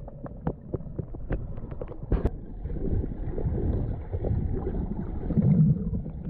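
Muffled underwater noise picked up by a submerged camera: scattered sharp clicks over the first two seconds, then a steadier low rushing of moving water and bubbles that is loudest near the end.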